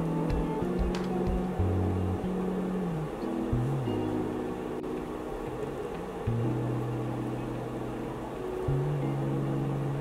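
Background music with slow, low held notes that change pitch every second or two.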